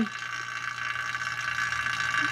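Electric AC vacuum pump running steadily, a constant hum with a high whine, as it pulls a vacuum on a pickup's air-conditioning system with a freshly replaced condenser before the refrigerant is recharged.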